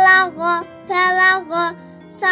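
A child chanting Arabic letter-syllables in a sing-song Qur'an-reading drill, four short syllables in quick succession, over a soft steady musical backing.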